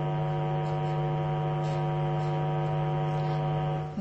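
Steady low electrical buzz, a mains-type hum with many overtones, unchanging in pitch and level. It stops abruptly at the end.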